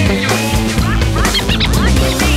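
Mallard duck quacking over a music track, with a cluster of quacks about one and a half seconds in.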